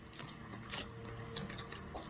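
Foil food pouch crinkling in the hands as it is squeezed and worked to get the beef out, a run of irregular sharp crackles.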